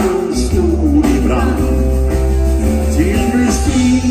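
A live band with guitar, bass and drums playing a song, with a man singing the melody into a microphone.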